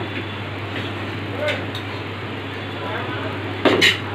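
Steady hiss and hum from a lit gas stove burner under a cooking pan, with a short loud clink of metal utensils near the end.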